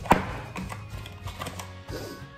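A single sharp knock just after the start, then soft background music with a steady low tone and a few faint taps.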